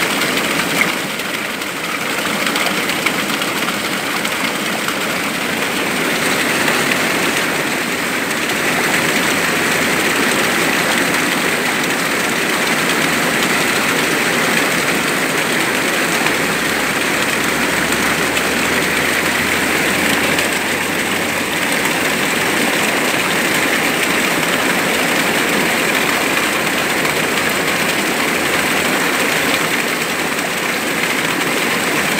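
Small waterfall pouring onto rocks and a shallow pool close by: a loud, steady rush and splash of falling water.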